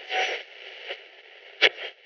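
Portable radio static hissing through a small speaker, as if tuning between stations, with short louder bursts of crackle, the sharpest about one and a half seconds in.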